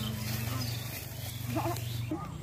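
A short bleat from a farm animal over a steady low hum.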